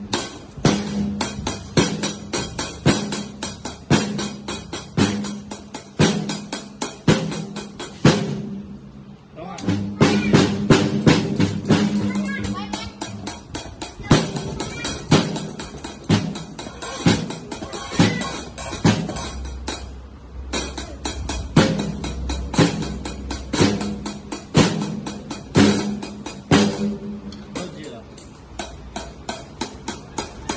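Acoustic drum kit struck with wooden sticks: a steady run of hits on a drum and cymbals, with background music and a singing or speaking voice alongside.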